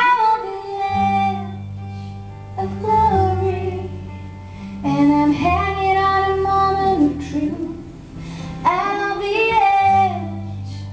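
A woman singing long held, emotive phrases over a slow acoustic guitar accompaniment, performed live.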